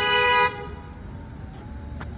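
A car horn honking with a steady single tone that cuts off about half a second in, sounded as one car nearly hits another; low street traffic noise follows.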